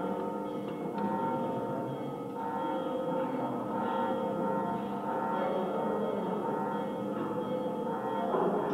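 Village wind band playing slow, sustained chords, the held brass notes shifting every second or two.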